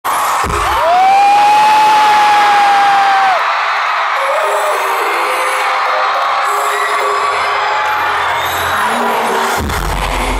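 Concert crowd screaming and cheering. A heavy thump comes about half a second in, and one shrill voice holds a long high note for about two and a half seconds. Near the end a deep bass beat of the band's music comes in under the crowd.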